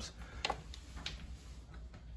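Faint steady low hum with a few light clicks, about half a second and a second in.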